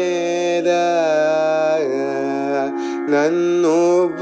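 Male voice singing a Carnatic melodic phrase: long held notes ornamented with gamaka oscillations and glides, with a short break for breath about three quarters of the way through.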